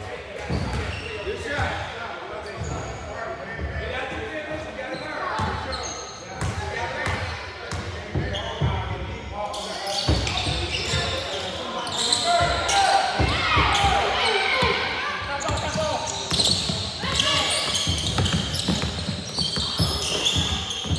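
Basketball being bounced on a hardwood gym floor, with shouting voices from players and spectators echoing in the hall. It grows busier and louder about halfway through as play resumes.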